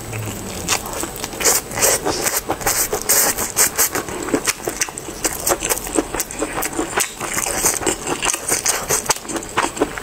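Close-miked chewing of a kelp-filled tofu-skin roll: a bite, then a dense, uneven run of small mouth clicks and crackles.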